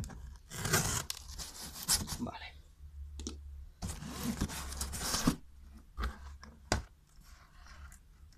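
Packing tape on a cardboard box being cut with a knife and ripped off in several tearing strips, the longest around the middle. Two sharp knocks of cardboard being handled follow near the end.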